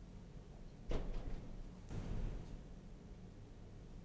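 Quiet room tone with a steady low electrical hum, broken by one soft thump about a second in and a briefer, muffled knock or rustle about two seconds in.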